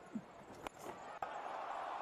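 Faint, steady hubbub of a large stadium crowd, with a couple of sharp clicks.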